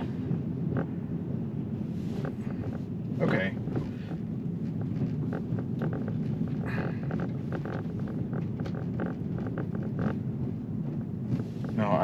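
Steady low rumble of tyre and wind noise from a Tesla electric car driving along a road, with no engine sound. A man's voice gives a couple of short murmurs about three and seven seconds in.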